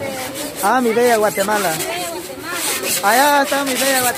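Several people talking close by, in lively back-and-forth chatter, with someone calling out a name.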